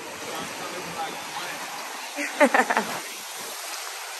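Small waves washing in over shallow water on a sandy beach, a steady rushing wash. A person's voice cuts in briefly about two and a half seconds in.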